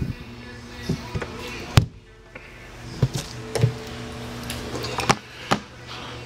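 Scattered handling clicks and knocks, the sharpest about two seconds in, as an RV's exterior storage compartment door is unlatched and opened, over a steady low hum.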